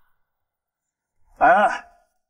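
Near silence, then a man calls out a name ("Anan") once, about a second and a half in.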